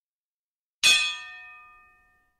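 Notification-bell sound effect: a single bright metallic ding, struck sharply about a second in and ringing out over about a second.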